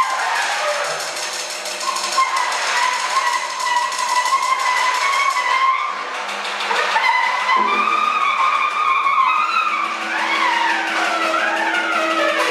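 Free-improvised music built from squealing friction sounds: a metal rod scraped around the rim of a tuba bell holds a steady high, whistling tone. In the last few seconds, gliding squeals rise and fall as a mallet is rubbed across a snare drum head.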